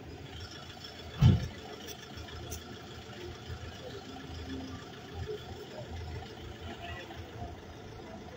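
A vehicle engine idling in a steady low rumble of street noise, with a single loud, low thump about a second in.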